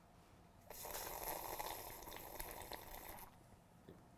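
A person sipping loudly from a mug of drink: one long slurping sip that starts about a second in and lasts about two and a half seconds.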